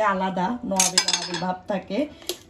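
A santoku kitchen knife clinking against a metal tray as it is set down, with a sharp metallic clatter about a second in, under talking.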